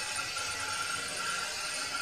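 Steady hiss of an egg curry simmering in a pot on the stove.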